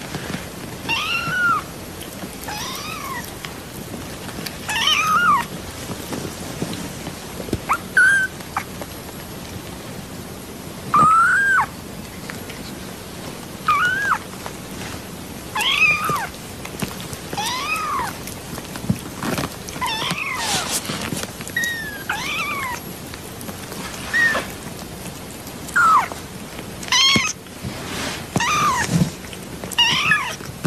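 Young kittens mewing over and over in short, high-pitched calls that rise and fall in pitch, about one every second or two, over a faint steady hiss.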